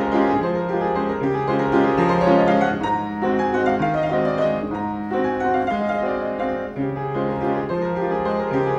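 Solo piano playing a continuous piece: chords and a melody over a bass line that moves from note to note.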